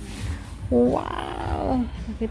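A person's long, drawn-out vocal exclamation, a little over a second long, rising and then falling in pitch, over a steady low room rumble.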